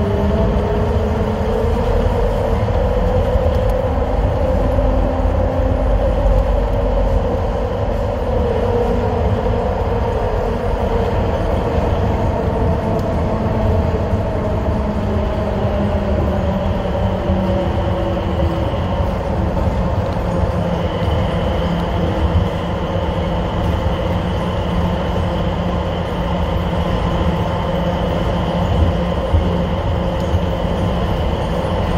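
Mitsubishi Crystal Mover rubber-tyred automated people mover running through a tunnel, heard from inside the car: a steady rumble with a whine that rises over the first few seconds and then slowly falls. A higher thin whine joins about halfway through.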